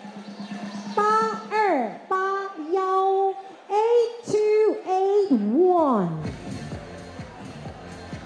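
A woman's voice over a microphone and PA, calling out in a sing-song chant with long held notes and sliding pitch, over background music.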